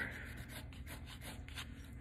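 Pencil on paper: faint, short scratching strokes as texture is shaded into a leaf of the drawing.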